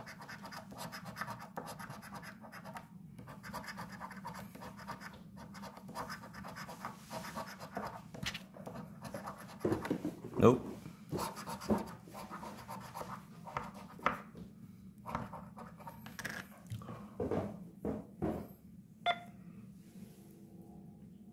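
A coin scraping the coating off a paper lottery scratch-off ticket in quick, irregular strokes, with short pauses and louder bursts of scratching partway through. A single sharp click near the end.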